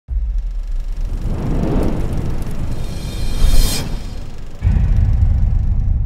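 Cinematic logo-intro music: a deep rumble with a whoosh that builds and peaks about three and a half seconds in, then a new deep bass hit a little later that rings on.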